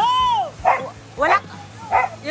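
A dog gives one high, drawn-out yelp that rises and falls. Three short barks follow, evenly spaced about half a second apart.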